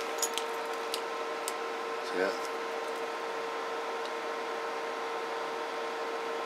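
Steady hum of bench electronics with a held mid-pitched tone and fainter higher tones, typical of cooling fans and test equipment running. A few light clicks and handling sounds come in the first second and a half as the CB radio is picked up and tilted.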